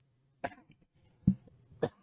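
A man giving a few short coughs: three brief bursts, about half a second in, just after a second, and near the end.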